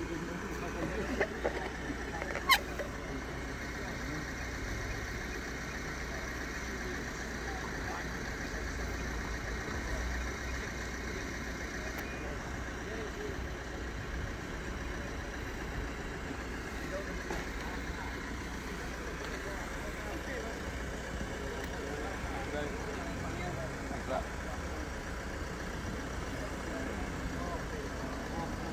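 Faint, indistinct talk among a few people in the street over a steady low vehicle rumble, with one sharp click about two and a half seconds in.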